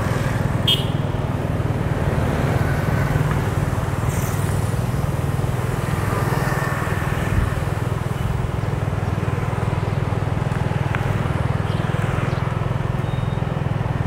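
Steady low engine hum and road noise of a motorbike riding through street traffic, with other motorbikes and cars around it.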